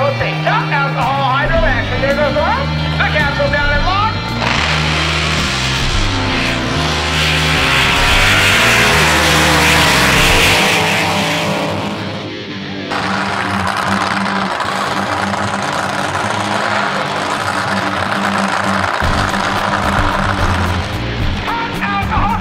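Background rock music with a steady bass line, overlaid from about four seconds in by the loud noise of a racing capsule drag boat's engine. The engine noise builds to a peak about ten seconds in and breaks off briefly. It runs on again until shortly before the end, when the music comes back to the fore.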